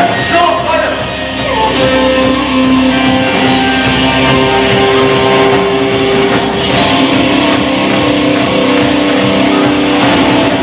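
Live rock band playing, with electric guitars, drums and a singer's voice.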